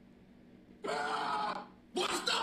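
A single short vocal cry, a pained wail that starts about a second in and lasts under a second.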